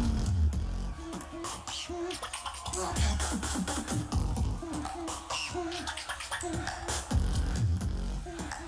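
Live competition beatboxing: one beatboxer's vocal drum beat of low kick thumps, sharp snare and hi-hat clicks and short hummed bass notes repeating in a steady rhythm.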